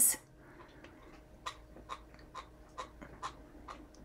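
Hands handling a pieced cotton quilt block on a cutting mat: soft, irregular rustles and light ticks as the fabric is turned, laid down and tidied of loose threads.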